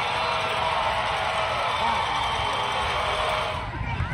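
Football stadium crowd: many voices talking and shouting at once in a steady din. The noise dips briefly just before the end.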